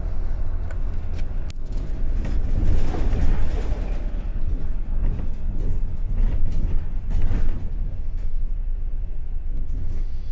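A moving bus heard from inside: steady deep engine and road rumble with a few light rattles, swelling about three seconds in and again near seven seconds.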